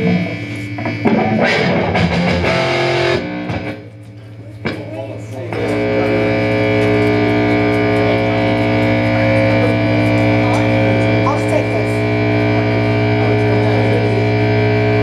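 Distorted electric guitar through an amplifier: loose notes and strums at first, then a chord struck about five and a half seconds in and left ringing steadily, with amplifier hum.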